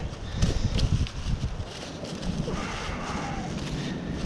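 A largemouth bass flopping on dry grass and leaves: a run of uneven thumps and rustles, most of them in the first second or so, then quieter rustling.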